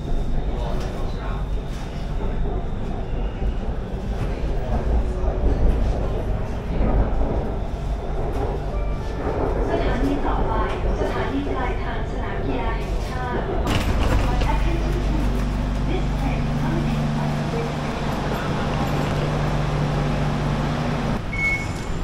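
Inside a Bangkok BTS Skytrain carriage: the train's steady low rumble. About fourteen seconds in, a steady low hum joins it.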